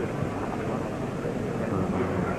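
Indistinct murmur of a crowd of people in a hall, heard through the noisy, muffled sound of an early 1930s film recording.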